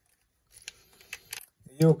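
Faint handling noise: a few small clicks and light rustling as a camera and a metal lens adapter ring are handled and moved, starting about half a second in.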